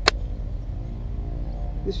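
A single sharp click of a knife seating in its Kydex sheath, just after the start, over a steady low hum.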